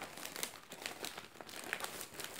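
Thin plastic carrier bag crinkling and rustling as hands rummage inside it, a quick run of small crackles.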